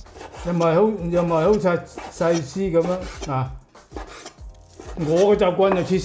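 A cleaver slicing raw chicken thigh into strips on a wooden cutting board, the blade scraping and tapping the board. A man speaks Cantonese between and over the cuts.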